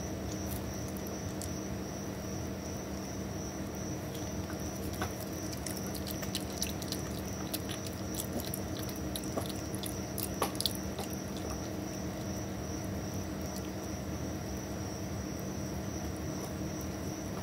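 An opossum eating from a bowl of fruit and greens: small, sharp chewing clicks come in a loose cluster through the middle of the stretch, over a steady background hum.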